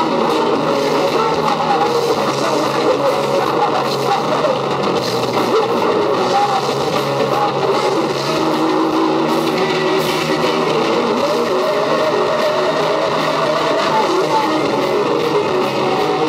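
Live heavy metal band playing loud and steady: electric guitars, bass guitar and drums.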